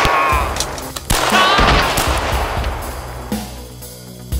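Two loud gunshots about a second apart, each followed by a long echoing tail, over a low, steady film music score.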